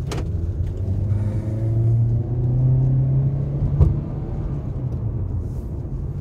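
2018 Honda Civic's engine and road noise heard inside the cabin while driving. The engine hum rises in pitch as the car accelerates, then eases off after a click about four seconds in.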